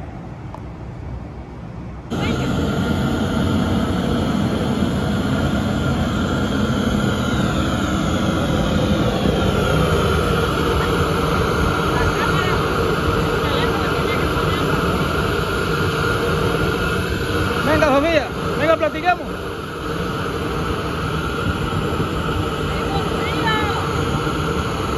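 Faint outdoor city background, then from about two seconds in a loud, steady roar of a propane burner firing under a small black roofing pot. A brief voice cuts in about eighteen seconds in and again near the end.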